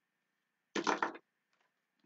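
Silence, broken about a second in by one short spoken word.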